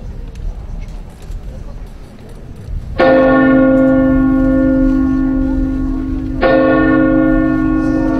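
A church bell tolling twice, about three and a half seconds apart, each stroke ringing on with a long, steady hum. It is played through a large hall's sound system after a low rumble of hall noise.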